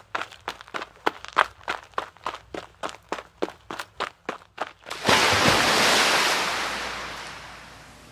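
Quick, even footsteps, about four a second, like someone running, for about five seconds. They give way to a sudden loud rushing noise that fades away.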